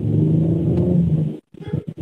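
Car engine running, heard from inside the cabin as a steady low hum. It cuts out abruptly about a second and a half in, a dropout in the live-stream audio.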